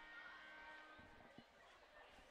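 Near silence: faint room tone, with a couple of soft knocks a little after a second in.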